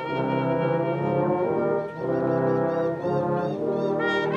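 Brass choir of trombones, French horns and tubas playing sustained chords, with a brief break just before two seconds in before the chord resumes.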